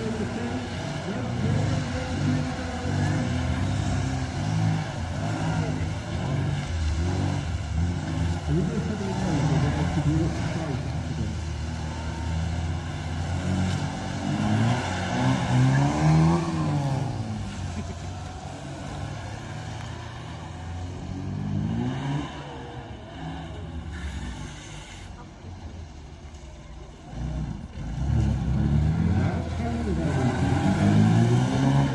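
Classic Minis' small four-cylinder engines revving up and down as the cars are driven hard around a tight arena, the engine note rising and falling over and over. The engines quieten for a few seconds past the middle, then rev up again near the end.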